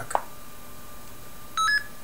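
Arduino blue box's speaker giving one short electronic beep about one and a half seconds in, its pitch stepping up halfway through, as a keypad key is pressed to enter memory playback mode. A faint click comes near the start.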